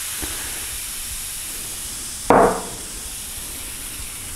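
Apple cider vinegar fizzing as baking soda reacts in it, a steady hiss while the foaming liquid is poured from a cup. One brief louder burst comes about two seconds in.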